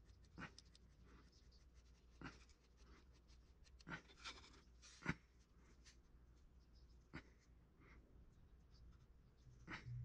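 Faint, scattered scrapes and light taps of a wire loop sculpting tool and fingers working a small clay feather, over a low steady hum.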